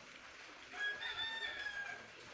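A rooster crowing once, a single drawn-out call that starts about two-thirds of a second in and sags slightly in pitch toward its end.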